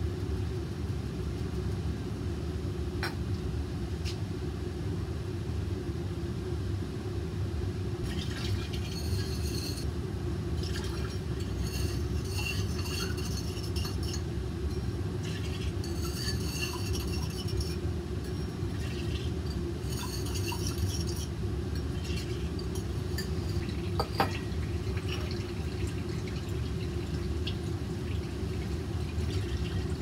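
Steady hum of lab fume-hood ventilation, with light clinks of glassware and liquid being poured into a glass chromatography column, coming in spells through the middle. A few sharp glass clicks stand out, the loudest about three-quarters of the way through.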